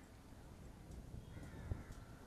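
A crow cawing once, briefly, about a second and a half in, over low wind rumble on the microphone.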